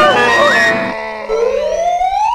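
Comedy-film soundtrack: busy pitched music stops about a second in, and a single long rising pitch glide starts, a comic whistle-like sound effect over a held low note.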